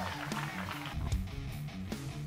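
Quiet background music with a steady low bass line.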